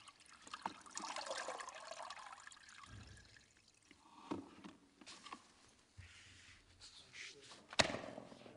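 Faint water trickling and dripping in a mop bucket as a flat mop pad is rinsed and wrung in the UltraSpeed trolley's lever press, with a few short plastic clicks.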